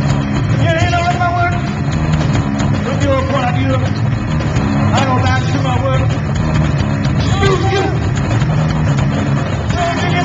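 Loud live band playing a heavily distorted, sustained guitar-and-bass riff, with shouted vocal lines coming in at intervals over it.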